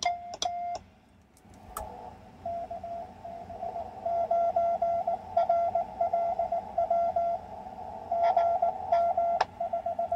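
Morse code on 40 metres: in the first second a few characters are sent by hand on a straight key, each tone with a click from the key contacts; then, after a sharp click, a distant station's CW comes through the Si4732 pocket receiver's speaker as a steady-pitched on-off beep over faint band hiss.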